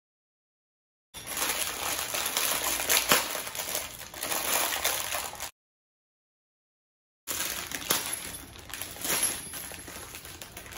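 A plastic bag of small metal screws crinkling and clinking as it is handled, in two stretches broken by short patches of dead silence.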